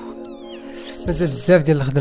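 Soft background music with steady held tones, a quick run of short high falling chirps near the start, and a brief voice about a second in.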